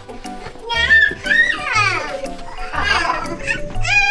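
A toddler crying loudly in wavering wails, starting about a second in, over light background music with a steady low beat.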